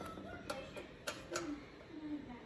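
A few faint, sharp clicks and taps, about four in two seconds, over low room noise.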